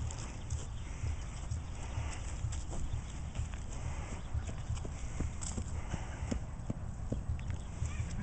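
Irregular footsteps on grass and dry leaves, a few short steps a second, over a steady low rumble of wind on the microphone.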